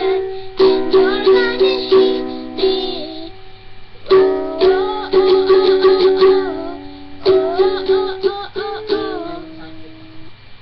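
Ukulele strummed in chords, with a girl's voice singing the melody along with it. The strumming lulls briefly about three seconds in and again near the end.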